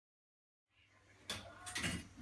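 Silence for the first moment, then a low hum and a few short metallic clinks and scrapes of a steel plastering trowel against a hawk, the sharpest about a second in.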